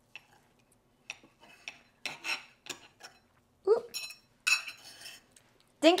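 Metal forks clinking and scraping against a bowl in a series of short, scattered clicks as bites of meat and sauce are picked up. A single short "ooh" comes a little past halfway.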